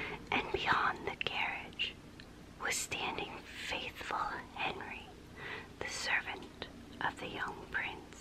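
A woman whispering close to the microphone, breathy and unvoiced, with a few small mouth clicks between the words.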